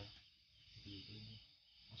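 Near silence: a faint, steady high-pitched chirring of night insects, with a soft murmured voice about a second in.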